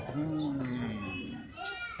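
Faint human voices in a pause of the speech: a drawn-out low vocal sound that slowly falls in pitch for about a second, then a brief high-pitched call that rises in pitch near the end.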